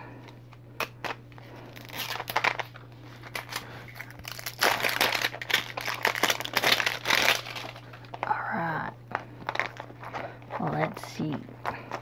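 Clear plastic shrink-wrap being peeled and torn off a plastic capsule ball, crinkling and crackling in quick bursts, densest through the middle of the stretch.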